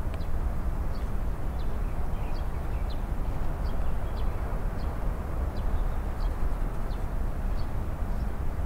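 Steady outdoor city background noise with a low rumble, like distant traffic. Faint short high sounds recur about twice a second over it.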